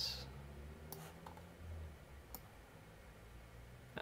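A few faint, isolated computer mouse clicks over a low room hum.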